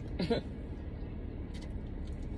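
Steady low rumble inside a car's cabin, after a brief trailing bit of a woman's voice at the start.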